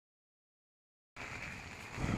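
Dead silence for about the first second, then a steady hiss of wind and rain outdoors.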